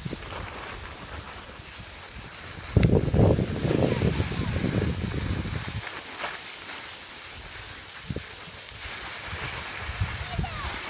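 Wind buffeting a phone's microphone while skiing downhill, loudest from about three to six seconds in. Under it runs a steady hiss of skis sliding on packed snow.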